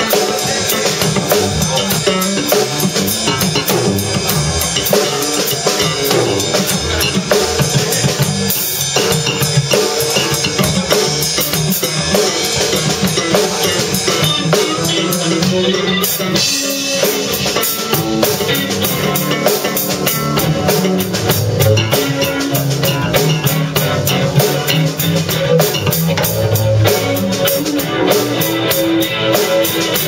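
A live rock band playing: a Pearl drum kit, electric bass and electric guitar together, with the drums prominent.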